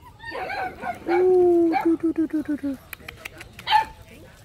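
A brindle Phu Quoc Ridgeback puppy, about two and a half months old, calling out: a rough bark, then a held whining note that breaks into a quick run of short yelps, and a sharp yip near the end. A few light clicks fall between.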